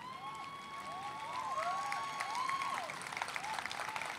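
Audience applause, a steady patter of many hands clapping. Whoops and cheers ride over it, one long held call and several rising-and-falling ones, mostly in the first couple of seconds.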